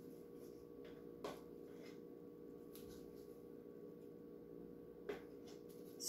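Near silence: room tone with a steady faint hum and a few faint, brief taps or rustles spread through it.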